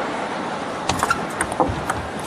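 A table tennis ball clicking off the bats and the table as a serve and the first returns are played: a quick run of sharp ticks starting about a second in. They sound over the steady background noise of the hall.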